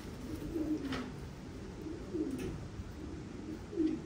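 Racing pigeons cooing: a few low, wavering coos at intervals.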